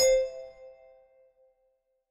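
A single bell-like ding at the start that rings out and fades away over about a second and a half, leaving silence.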